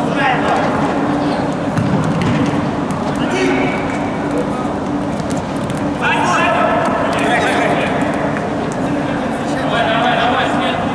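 Players shouting and calling to each other in a reverberant indoor sports hall during a futsal match, with running feet on the court. The loudest calls come near the start, around three seconds in, from about six to seven and a half seconds in, and again near the end.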